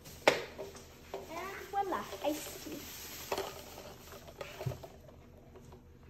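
Ice knocking and clinking in a plastic cup as iced tea is stirred with a straw, with a sharp knock just after the start and another about three seconds in.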